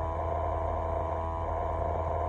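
Steady low hum of a parked truck's running machinery, heard inside the sleeper cab, with a few faint steady tones above it.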